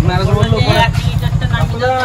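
Voices talking over the fast, even low pulsing of a motor vehicle engine running close by. The pulsing stops right at the end.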